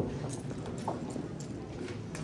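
Irregular hollow footsteps knocking on a wooden stage floor, over a low murmur of people talking in the hall.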